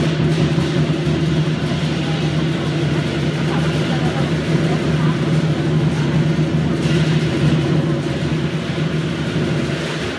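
Lion dance drum in a fast continuous roll with cymbals, a steady rumbling wash with no separate beats, echoing in the hall.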